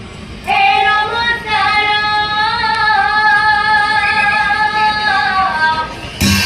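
A woman singing one long phrase of Nagara Naam devotional song, held mostly on one high pitch with slight wavering. It starts about half a second in and dies away shortly before the end.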